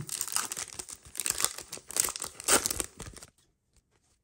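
Foil trading-card pack wrapper being torn open and crinkled by hand, an irregular crackling with a few sharper tearing bursts. It stops abruptly a little after three seconds in.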